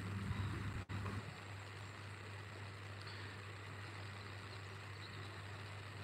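A faint, steady low hum over outdoor background hiss, with a brief cut-out in the sound a little under a second in.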